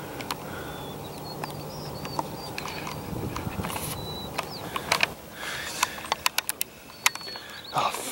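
A train running in the distance, a low steady rumble that fades after about five seconds, with birds chirping. A run of sharp clicks comes about five to seven seconds in.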